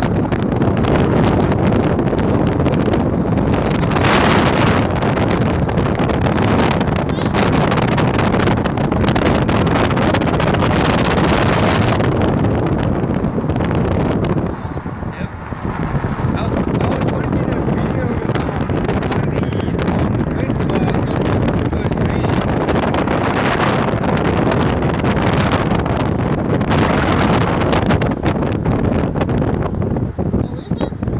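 Loud wind rushing over the microphone as the vehicle moves along the street, mixed with a steady road rumble. It eases briefly about halfway through.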